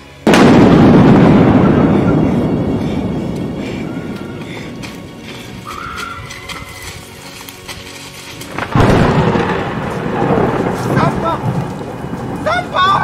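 A deep thunder-like boom, added as a dramatic sound effect, that hits suddenly about a quarter second in and rolls away over several seconds. A second loud crash follows near nine seconds in.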